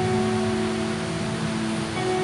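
Soft background music of steady held chords under a constant hiss.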